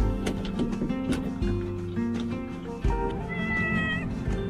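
Background music plays throughout; near the end a cat meows once, a single held, high call.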